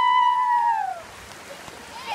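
A child's long, high-pitched cry, held and then falling in pitch before it stops about a second in, over the steady sound of the river running over a rock shelf.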